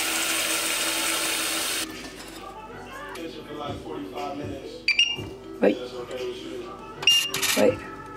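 Tap water running hard into a stainless steel pot, cut off about two seconds in. Then two short high beeps from a Bosch glass-top hob's touch controls as it is switched on, over background music.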